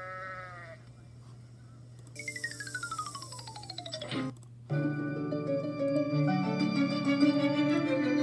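A short goat-like bleat sound effect for the cartoon ibex, then a long falling whistle-like glide from about two to four seconds in. At about five seconds classical orchestral music with flute starts and carries on. All of it is played through computer speakers.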